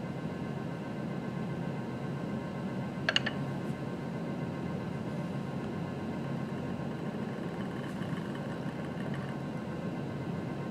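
A steady low hum, with a short rattle of glass clinks about three seconds in as a small glass beaker is swirled and slid on a hot plate's ceramic top.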